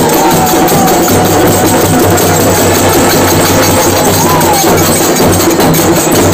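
Loud live folk music with drums and rapid, evenly spaced cymbal or tambourine strokes, a thin wavering melody line running above them.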